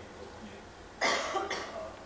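A man coughing: one loud cough about a second in, followed by a second, weaker one half a second later.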